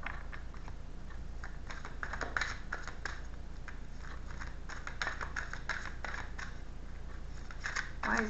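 A deck of tarot cards being shuffled by hand: a run of light card clicks and flicks, busiest around two seconds in and again around five to six seconds in.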